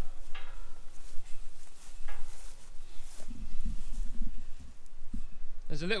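Wind buffeting a camera microphone's furry windshield, heard as a steady low rumble, with faint rustles of walking through long grass.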